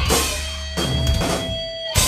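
Live rock band with distorted electric guitars, bass and drum kit playing accented hits together: one at the start, one just before a second in, and a sharp one at the end, with guitar chords and a held guitar note ringing between them.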